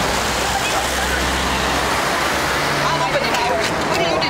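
Steady rushing street traffic noise with a low engine rumble in the first half, and people's voices talking in the background near the end.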